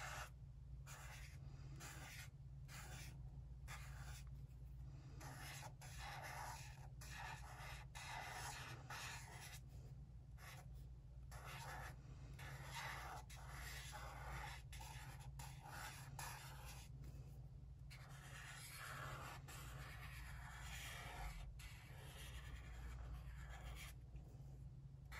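A felt-tip marker drawing on paper: faint scratchy strokes, broken by short pauses where the tip lifts off the page, over a low steady hum.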